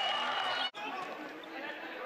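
Basketball arena ambience: crowd chatter and indistinct voices, broken by a brief sharp dropout under a second in where the sound cuts.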